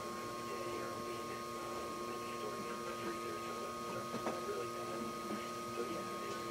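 Steady electrical hum made of a few unchanging tones, the strongest a pair of high tones close together, over faint background noise.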